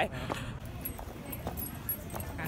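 A few faint footsteps on a tiled floor over low indoor room noise.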